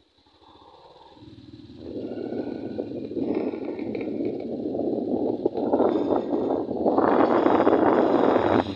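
Wind rushing over the microphone and road noise from a moving vehicle, building from near silence about a second in and growing steadily louder.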